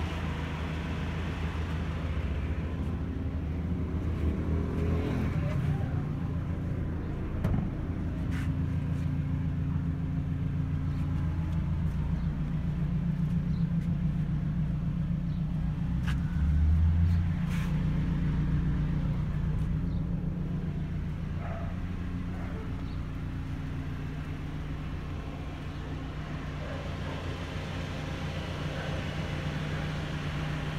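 Suzuki Alto's engine idling steadily, with a brief louder low bump about halfway through.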